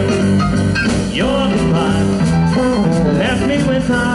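Live band playing a swing-style jazz standard through a PA, with drums, keyboard, electric guitar and trombone, and a sliding note about a second in.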